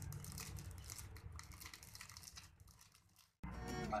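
Faint crinkling and rustling of clear plastic garment bags as a stack of packed shirts is handled. It fades out partway through, and after a moment of dead silence, music starts near the end.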